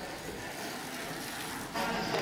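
Steady, low outdoor street background noise with a faint rumble. Near the end it gives way abruptly to louder people chattering.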